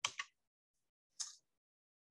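Two brief, faint clicks, one at the start and one about a second later, with dead silence between them.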